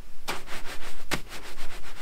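Naturescapes Skimmer 2 camera beanbag being handled on a truck's door window frame: rustling of the fabric and filling with several soft, brief knocks.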